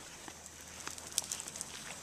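Quiet outdoor background with a few faint scattered clicks and brief high chirps.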